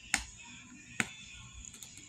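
Plastic screw cap of a squeeze bottle of salad dressing being twisted open, giving two sharp clicks about a second apart.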